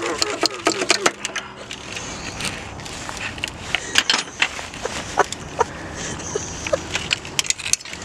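Irregular metal clinks and knocks as the old alternator of a 2002 Toyota Camry is worked loose and lifted out of the engine bay.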